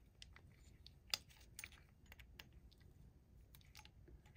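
Faint, scattered small clicks of a coin against the metal regulator cup as a quarter is fitted into a slot, with the loudest click about a second in.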